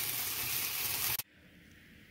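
Garlic cloves, mushrooms and onions sizzling in a cast-iron skillet being flambéed with brandy, a steady hiss that cuts off suddenly about a second in.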